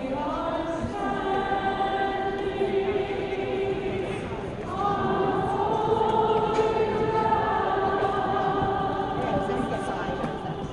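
A congregation of women singing together in long held notes: two phrases with a short break between them about four and a half seconds in.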